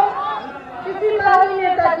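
Speech only: a woman addressing a crowd through a podium microphone, with a short pause about halfway through.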